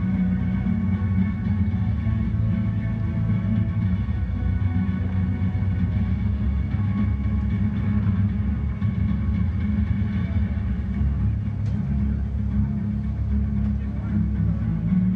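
Music played over a public address system, heard at a distance, with a steady low rumble underneath.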